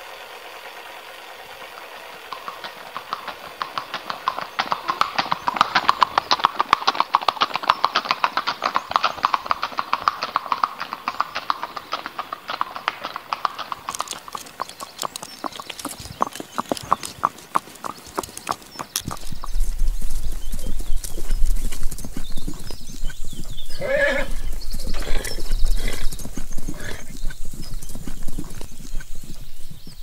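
Horse hooves clopping, becoming louder about two-thirds of the way through, with a horse whinnying and a man shouting "Hey!" and laughing near the end.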